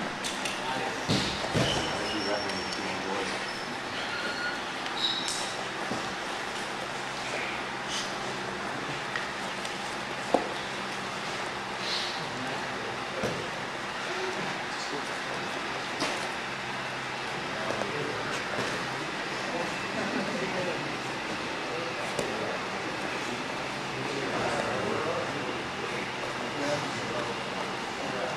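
Indistinct background talk in a gym hall, with a few sharp knocks and slaps from two grapplers moving on the mats. The loudest knock comes about ten seconds in.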